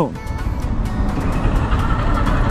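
Motorcycle riding in city traffic: a steady rush of engine, wind and road noise, heaviest in the low end, with background music playing underneath.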